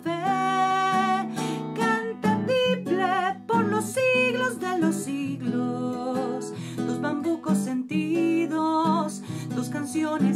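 A woman singing to her own strummed classical guitar, holding a long note at the start, then singing on with vibrato over steady chords.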